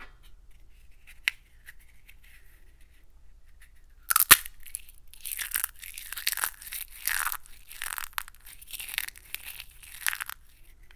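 A silver-painted ball crushed in a fist: a sharp crack about four seconds in, then repeated crunching and crackling as the grip keeps squeezing.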